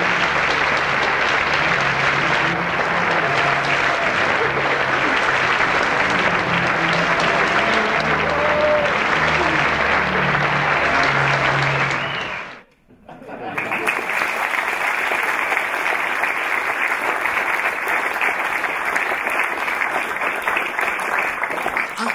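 Audience applauding, with music playing low underneath during the first half. The clapping breaks off abruptly about two-thirds of the way through, then starts again and carries on.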